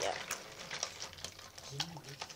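A hand moving through a sink full of small plastic toy figurines in soapy water: sloshing water and scattered small clicks of the plastic figures knocking together.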